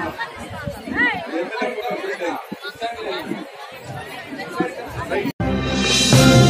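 Many people chattering and talking at once in a crowd. Shortly before the end the sound cuts out abruptly and a news channel's intro theme music begins.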